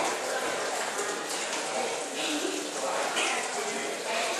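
Indistinct voices, too faint to make out, over a steady hiss.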